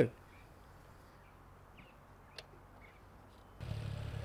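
Quiet outdoors with a few faint bird chirps and a single click; about three and a half seconds in, the low, steady running of a Ural sidecar motorcycle's air-cooled flat-twin engine comes in.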